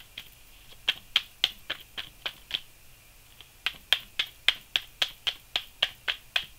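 A deck of tarot cards being shuffled by hand, the cards slapping together in quick sharp clicks about four a second, in two runs with a brief pause in the middle.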